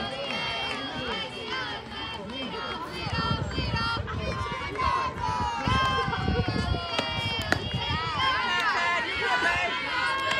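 Many girls' voices shouting and chanting softball cheers from the field and dugout, overlapping high calls and drawn-out notes. A single sharp knock comes about seven and a half seconds in: an aluminium softball bat meeting the ball.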